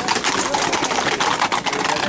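Hooves of several Camargue horses and a bull clattering on an asphalt road in a fast, dense run of hoofbeats.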